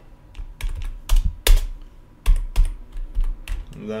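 Computer keyboard keystrokes: a string of irregular key presses as a shell command is typed, the loudest clacks about a second and a half in.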